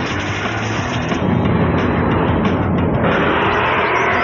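Loud TV soundtrack: background music with a rushing sound effect layered over it, the whole mix turning fuller and brighter about three seconds in.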